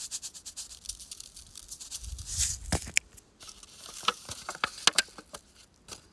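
Salt shaken from a container onto raw meat in a plastic tray: a quick patter of falling grains with a short hiss, then scattered clicks and crackles as the tray and meat are handled.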